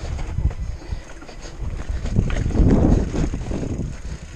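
Mountain bike rolling over loose rock with rattles and knocks, while wind rumbles on the camera microphone. The rumble is heaviest about two and a half to three seconds in.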